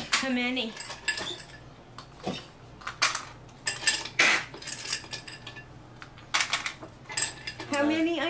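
Ice cubes and a drinking glass clinking among other kitchenware, in a string of separate sharp clinks as a drink is made.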